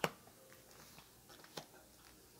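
Tarot cards handled on a cloth-covered table: a sharp tap right at the start and another about a second and a half in, with faint small ticks between.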